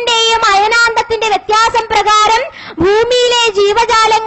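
A woman singing a devotional verse into a microphone, in short phrases with long held notes.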